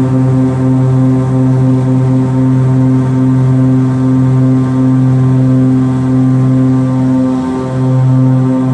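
Piper Chieftain's twin six-cylinder piston engines and propellers at takeoff power, heard from inside the cockpit: a loud, steady drone with a strong low hum, dipping briefly near the end as the plane lifts off.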